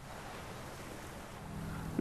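Steady background hiss with a faint low hum, even in level throughout.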